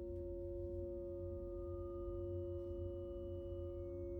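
Sustained electronic drone of sine-wave oscillators clustered on a few pitches: two strong steady tones hold a chord, fainter high tones enter and fade, over a low rumble.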